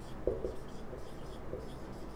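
Marker writing on a whiteboard: a few short strokes of the tip against the board, two close together about a quarter second in and another about a second and a half in.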